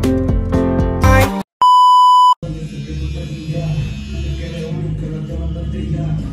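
Guitar music that breaks off about a second and a half in, followed by a loud, steady electronic beep tone lasting under a second, the kind inserted in editing. Softer background music follows.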